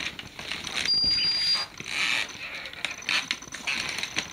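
Handheld metal detector giving a steady high beep of under a second about a second in, with a fainter high tone near the end, over clicks and rustling from the device being handled.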